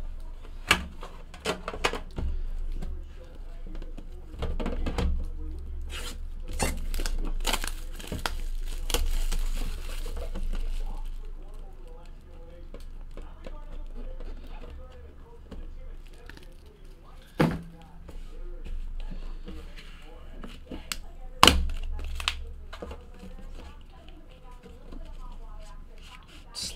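Plastic shrink wrap being torn and crinkled off a metal trading-card tin, with sharp clicks and knocks as the tins are handled and set down. Two knocks stand out loudest, late in the stretch.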